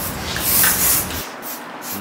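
Aerosol spray-paint can hissing: one long spray through the first second, then several short bursts near the end.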